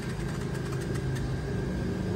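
A steady low mechanical hum with a constant pitch, like a motor or engine running at idle.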